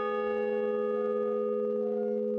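A large bronze bell ringing on after a single strike, several tones sounding together and holding steady.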